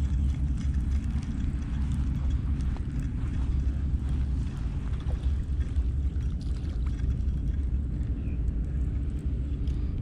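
Steady low rumble of wind on the microphone, with faint scattered ticks over it, as a spinning reel winds in a hooked whiting.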